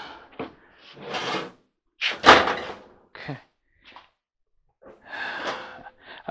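A White Westinghouse clothes dryer's door is swung shut, hitting the cabinet with a loud bang a little over two seconds in. A lighter knock follows about a second later, with handling rustles around them.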